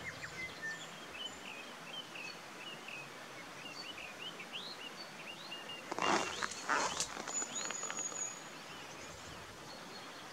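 Small birds calling and chirping, with many short rising whistles throughout. A loud rustle lasting about a second comes about six seconds in, followed by a brief high, steady whistle.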